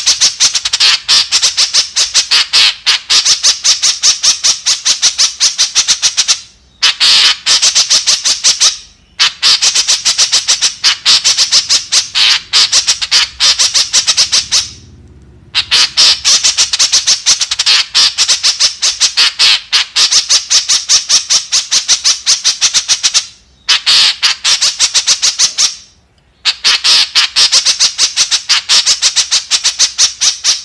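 White-breasted woodswallow (kekep) calling loudly in long bouts of rapid, harsh, high chattering notes, several a second. The bouts last a few seconds each and are broken by short pauses.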